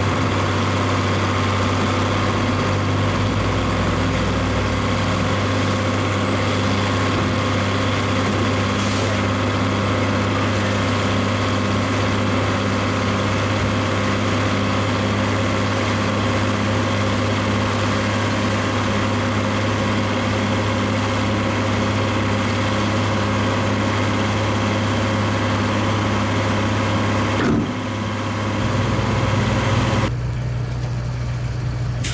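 Farm tractor engine running at a steady speed, driving a silage bagger, with the bagger's machinery humming along; the sound changes abruptly near the end.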